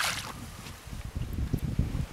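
A small trout splashing into the water as it is tossed back beside the boat, followed by a low rumble of wind on the microphone.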